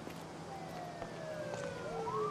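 Police siren wailing, its tone sliding slowly down in pitch from about half a second in and starting to rise again right at the end.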